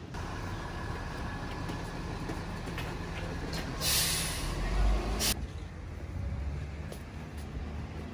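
Street noise from a heavy vehicle: a low, steady engine rumble, with a loud hiss of released air, like an air brake, about four seconds in that lasts just over a second.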